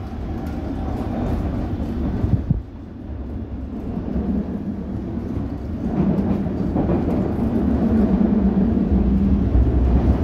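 London Underground S7 Stock train running, heard from inside the carriage: a steady low rumble that dips briefly about two and a half seconds in and grows louder from about six seconds in.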